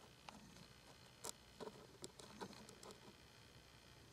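Near silence: quiet room tone with a few faint, scattered clicks and taps.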